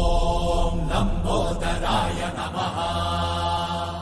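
Background devotional music: a chanted vocal holding long notes, easing down near the end.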